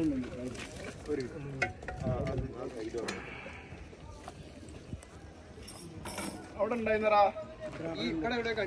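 Metal cooking pots and a ladle clinking, with a short splash of water poured from one pot into another about three seconds in.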